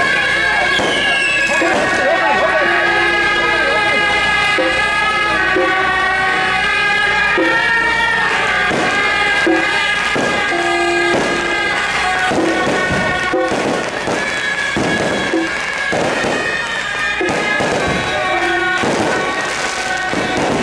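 A marching brass band of trumpets plays a melody of long held notes over a crowd. Firecrackers crack and pop through the second half.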